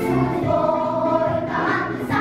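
A junior girls' choir singing a held, sustained phrase together, the pitch shifting twice, over a lower instrumental accompaniment.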